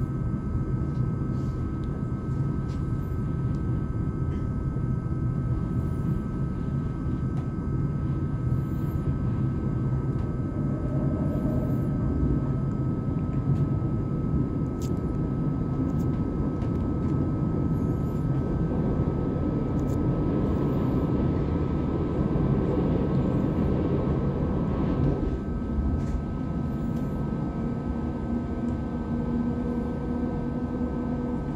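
Ride inside an ÖBB Cityjet double-deck electric train under way: a steady rumble of wheels on track, with a constant high whine over it. About 25 s in the rumble eases, and a low steady hum comes up near the end.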